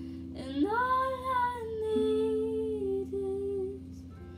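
A young woman singing one long held note over ukulele; the note rises at about half a second in, holds, then sags slowly and ends just before the close.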